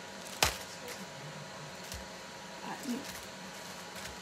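Wax paper with sticky dough on it being handled, with one sharp crackle about half a second in and a softer knock about two seconds in, over low kitchen room tone.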